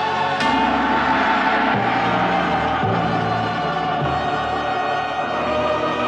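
Orchestral film score: a choir holding sustained notes over the orchestra, with low timpani strokes every second or so.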